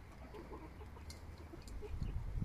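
Chickens clucking softly, a few short low calls spread through the moment, with a few faint clicks among them.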